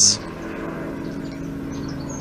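A steady low background hum, with a few faint high bird chirps near the end.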